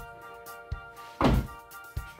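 Rear door of a 2019 Kia Optima being shut, closing with a single thunk just over a second in, over background music.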